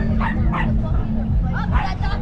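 A dog barking several short times over crowd chatter.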